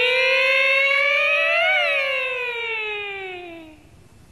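A single drawn-out stylized opera call, one held syllable of '领旨' sung in a high voice. It rises slightly, swells briefly a little under two seconds in, then glides down and fades away just before the end.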